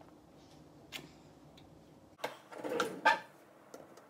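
Kitchen utensils and packaging being handled: a few light clicks, then a louder clatter of knocks about two to three seconds in, with a short ring like a metal fork against a dish.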